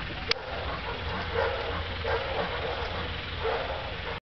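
A single sharp click near the start, then three short animal calls spaced about a second apart, over a steady low rumble.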